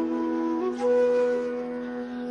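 Bansuri (Indian bamboo flute) playing a slow melody over a steady drone: it holds one note, then steps up to a higher note held for about a second.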